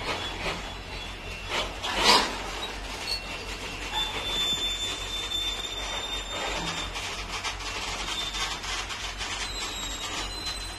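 Freight train wagons rolling past on steel rails: wheels knock over the rail joints, loudest about two seconds in, then a steady rumble with thin, high wheel squeals against the rails.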